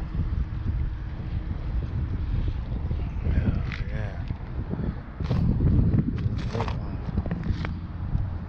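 Wind rumbling on the microphone while a microfiber towel is rubbed over car paint, with a few short vocal sounds and light handling clicks in the second half.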